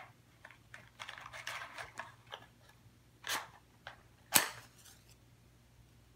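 A wooden match being struck: soft rustling of the matchbox, then a short scrape about three seconds in and a sharper, louder strike a second later that catches and lights.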